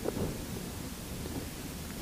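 Steady low rumble and hiss of room tone picked up by the microphone during a silent pause, with a faint brief sound just after the start.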